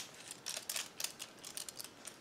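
Small plastic clicks and faint rattles of a selfie stick being handled as a detachable part is worked off it, with one sharp click at the very start.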